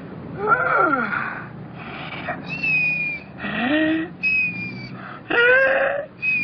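Men whimpering and wailing in comic fright: a string of about five short pitched cries, some sliding down and some rising, with thin high whining tones between them.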